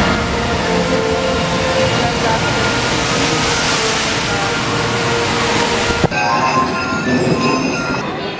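A water-ride boat splashing down a chute into a pool: a loud rush of water that swells to its peak in the middle, then cuts off abruptly about six seconds in, giving way to voices.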